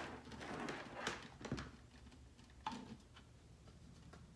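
Faint handling sounds from hot-gluing: a few light clicks and taps in the first second or so, then one sharper click near the end as the hot glue gun is set down on the countertop.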